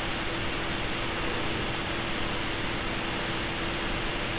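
Steady background room noise: an even hiss with a low steady hum and faint, evenly spaced high ticking.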